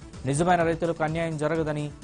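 A man's voice speaking Telugu, news-reading style, over background music.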